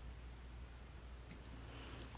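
Quiet room tone with a steady low electrical hum, and two faint clicks of a computer mouse or keyboard toward the end.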